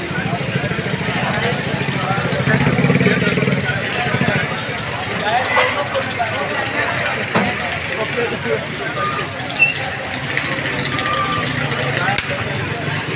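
Busy roadside street-food ambience: a steady low engine-like hum under scattered voices of a crowd, with a few brief high-pitched tones near the end.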